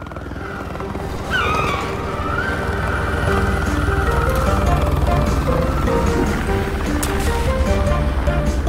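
Cartoon helicopter sound effect: a low rotor rumble that grows louder, with a high steady whine coming in about a second in, under background music with a stepping melody.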